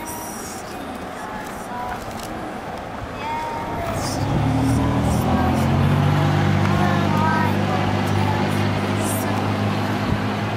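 Roadside traffic: a motor vehicle's engine hums steadily close by, growing loud about four seconds in and holding, over a background of traffic noise.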